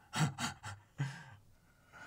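Men chuckling: three short breathy bursts of laughter in quick succession, then a longer laugh about a second in.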